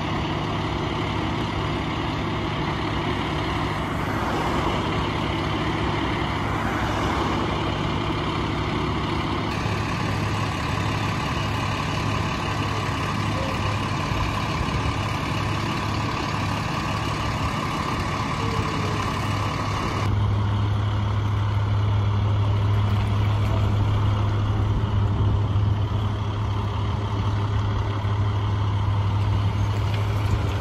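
Fire engines' diesel engines running, a steady low hum that steps up abruptly about two-thirds of the way through.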